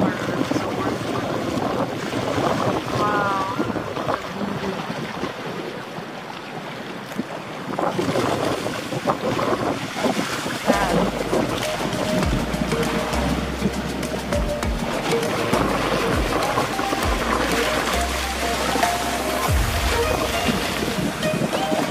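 Wind buffeting the microphone over the wash of shallow sea water at the shore. Background music with a steady bass line comes in about halfway through.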